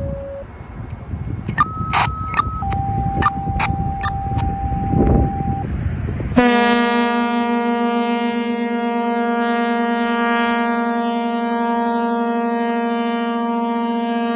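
A Quick Call II two-tone radio page, a short higher tone and then a longer lower one, with a few short chirps over it: the signal that sets off the sirens and pagers. About six seconds in, the fire house's air diaphragm horns start sounding one loud, steady, deep chord that holds to the end.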